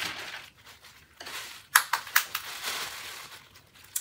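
Tissue paper rustling and crinkling as a wig is lifted out of its packaging and handled, with a few sharp crackles about halfway through.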